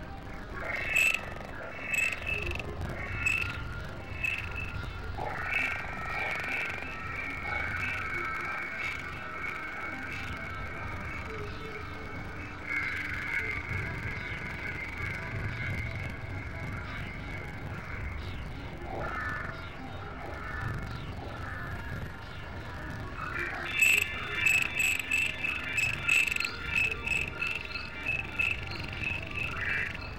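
Layered experimental electronic music: high, buzzy tones that pulse and then hold over a low rumble. Near the end it breaks into a quick run of chirping, croak-like pulses with sharp clicks.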